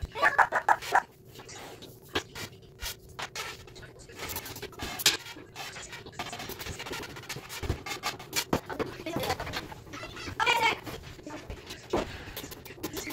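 Fast-forwarded sound of a flat-pack wooden toy kitchen being put together: a rapid string of small clicks and knocks from panels, parts and tools. Snatches of sped-up voices come in near the start and again near the end.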